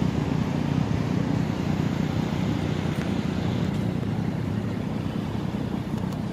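Steady street traffic noise from cars driving past, mostly a low even rumble with no distinct single events.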